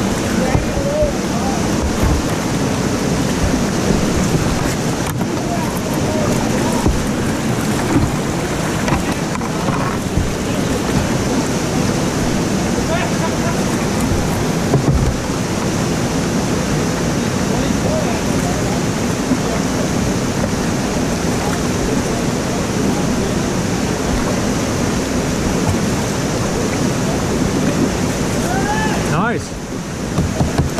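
Steady, loud rush of whitewater pouring over a seven-foot river falls and churning through the rapid right beside the kayak, with a brief dip in loudness just before the end.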